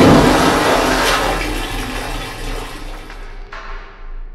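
Rushing, gurgling water, loud at the start and fading away over about three seconds: a water sound effect for the basement filling up, the room now underwater.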